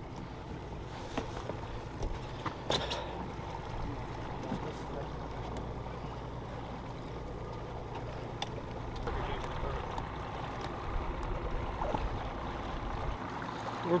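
A boat engine running steadily at low revs, with wash and wind noise over it and a few faint clicks.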